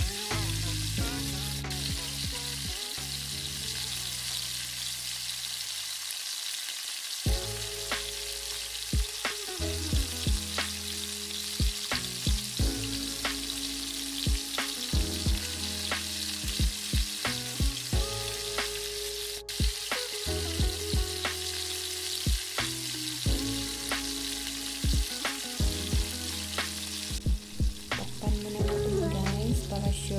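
Fried rice and breaded prawns sizzling in a frying pan: a steady frying hiss under background music with changing held notes and a regular clicking beat.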